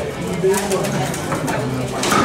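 Voices talking in the background of a table-football match, with sharp clacks of the ball being struck by the players' rod figures, the loudest about half a second in.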